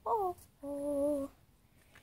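A young girl singing wordlessly, half-humming: a short falling note, then one long held note.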